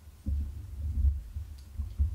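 Microphone handling noise: irregular low thumps and rumbling, with several stronger knocks.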